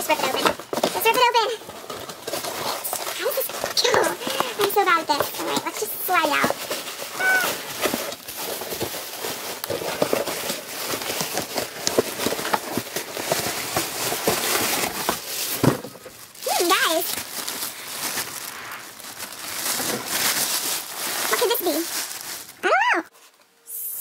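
Cardboard mailing box being torn open by hand: loud ripping and crackling of cardboard and packing tape, with short pitched squeals now and then.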